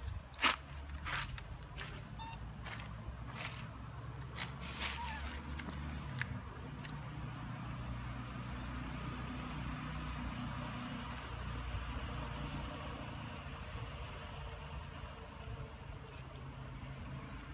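A steady low motor rumble, like an engine running, with several sharp clicks and crackles in the first six seconds.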